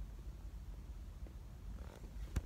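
Faint, steady low rumble inside a car's cabin, with no distinct events.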